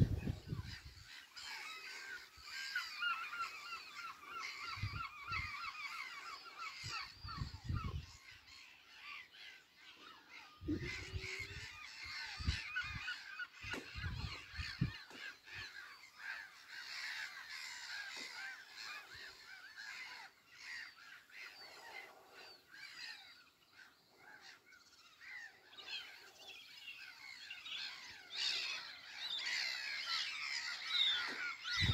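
Many birds calling at once, overlapping chirps and trills throughout, with a few dull low thumps in the first half.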